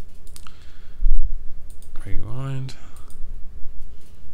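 Computer mouse clicking a few times, picked up close on a desk microphone over a steady low electrical hum. A low thump about a second in is the loudest sound.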